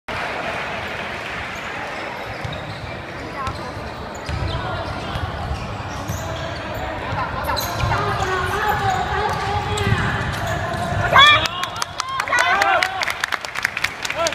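Indoor basketball game on a hardwood court: a ball being dribbled and players' voices calling out, in a reverberant gym. About eleven seconds in, a loud sharp sound is followed by quick high squeaks and knocks of sneakers on the floor as play speeds up.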